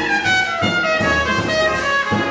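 Trumpet playing a slow descending jazz phrase over pizzicato upright bass, the bass sounding a plucked note roughly every two-thirds of a second.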